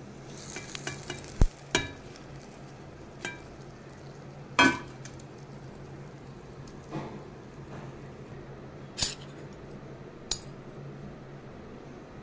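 Metal spoon clinking and scraping against a steel bowl and a pan as the fried tempering of mustard seeds and curry leaves is spooned onto the chutney. There are a few sharp clinks, the loudest about four and a half seconds in, over a low steady hum.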